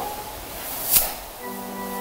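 A single sharp click about halfway through, then a church organ comes in with a steady held chord near the end, the opening of the hymn introduction.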